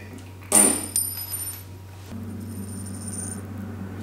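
A sudden bright metallic jingle about half a second in, its high ringing fading out over about three seconds, followed by a steady low hum.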